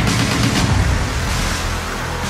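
Loud background music with a rapid run of percussive hits.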